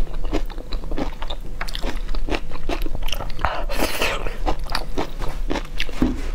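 Close-miked chewing of saucy noodles: many short wet mouth clicks and smacks, with one longer, louder slurp of noodles about four seconds in.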